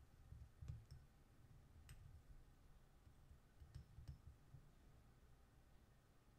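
A few faint, sharp clicks and soft low bumps as fingers handle and turn a small clay lid, in an otherwise near-silent room.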